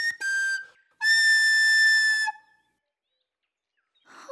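Recorder playing: a couple of short notes, then one long held high note from about a second in, which stops just past the halfway mark.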